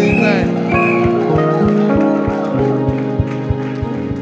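Live church praise music: held keyboard chords over a fast, steady drum beat of about four to five thumps a second, with a voice singing or calling out briefly in the first second.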